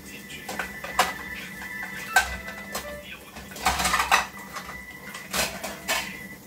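Dishes being washed at a kitchen sink: a few sharp clinks and clatters of crockery about one, two and five seconds in, with a longer rattle of handled dishes around four seconds.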